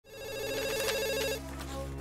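Electronic telephone ringer warbling through one ring of a little over a second, then pausing, over a low steady hum.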